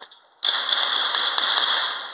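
Metal bar gate rattling on its frame as it is shaken and banged, a continuous clattering that starts about half a second in.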